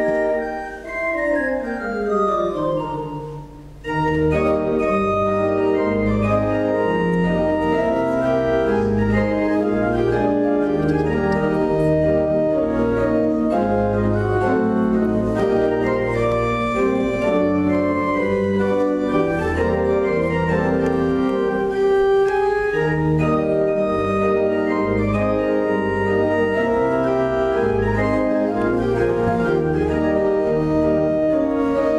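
Organ playing a modern piece. It opens with a descending run of notes over the first three seconds or so, then settles into full sustained chords over a pulsing bass.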